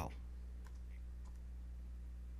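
A few faint computer keyboard keystrokes, short clicks around one second in, over a steady low electrical hum.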